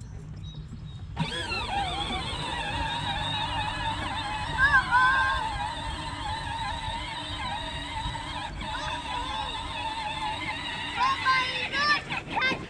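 Electric drive motors and gearbox of a John Deere battery-powered ride-on toy vehicle whining as it moves off about a second in, the pitch wavering up and down as it drives over grass, with a low rumble of the wheels.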